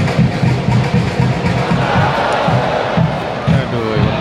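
Football ultras chanting in unison to a steady bass-drum beat, their sung voices coming through more clearly in the second half.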